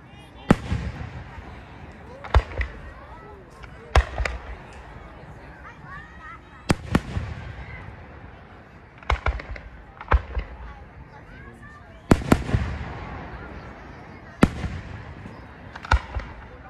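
Aerial firework shells bursting: a sharp bang every two seconds or so, often two in quick succession, each trailing off in a rolling echo.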